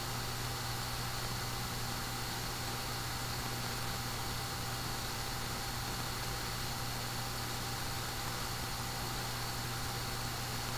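Steady background hum with an even hiss, unchanging throughout, with no distinct event.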